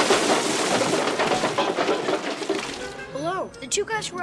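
A film sound effect of a shower of sparks and debris coming down: a loud, dense crackle of many small hits for about three seconds, fading out. A boy's voice speaks near the end.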